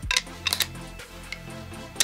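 A few sharp clicks, two close together about half a second in, as the U-shaped shackle of a fingerprint bike lock is pushed into the lock body, over steady background music.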